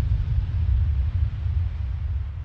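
Deep, low rumble of a logo-intro sound effect, the tail of a boom and shatter, slowly fading out.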